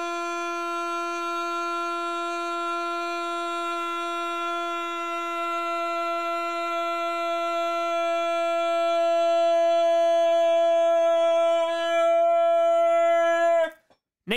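One long held note at a single steady pitch, horn-like and rich in overtones. It swells louder in its second half and cuts off sharply just before the end.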